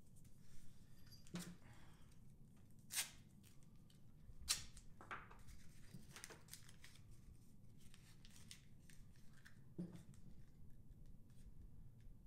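Quiet handling of adhesive tape and a small paper roll: tape pulled and torn and wrapped around the roll, with a few short sharp rips or crackles, the loudest about three and four and a half seconds in.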